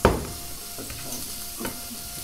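A spatula stirring egg and onion in a frying pan over a faint steady sizzle, with a sharp knock of utensil on pan at the start and a few lighter clicks after.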